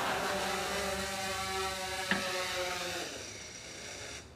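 Quadcopter drone's rotors buzzing at a steady pitch, with one sharp knock about two seconds in. The buzz dies away about three seconds in.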